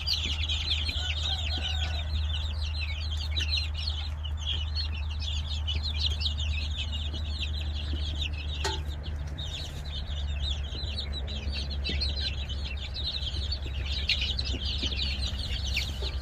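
A crowd of young chicks peeping continuously, many short high cheeps overlapping, over a steady low hum.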